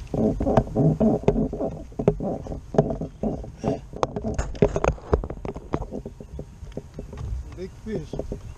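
A person's voice without clear words, with a few sharp knocks and clicks between about two and five seconds in.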